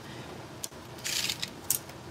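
Metal tape measure being handled and its steel blade pulled out: a short rasping burst about a second in, with a few sharp clicks around it.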